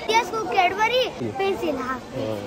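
A young child's high-pitched voice talking in short, broken phrases.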